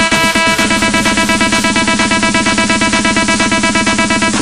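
Dutch house electronic dance music from a DJ mix, with a fast, even beat and layered synths; about half a second in, the bass shifts from a repeated figure to a held note.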